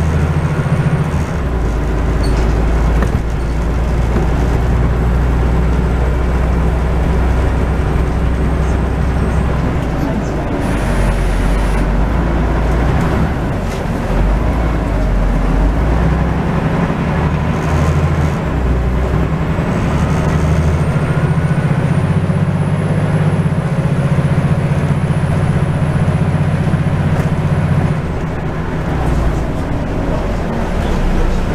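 Scania N94UD double-decker bus's diesel engine and drivetrain heard from inside the upper deck while under way, the engine note rising and falling as the bus speeds up and slows. There is a brief hiss about eleven seconds in. In the second half a thin high whine rises and then holds steady for several seconds.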